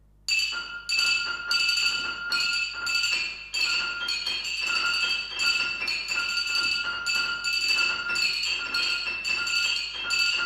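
Contemporary chamber music for piano and percussion: a high, glassy, bell-like sound struck over and over, about twice a second, starting suddenly out of near silence, with each strike ringing on into the next.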